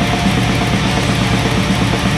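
Blackened death metal recording: loud, dense distorted electric guitars over fast, even drumming, with one high guitar note held through.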